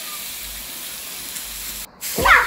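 A steady, even hiss of outdoor background noise with a faint low rumble underneath, cut off abruptly near the end.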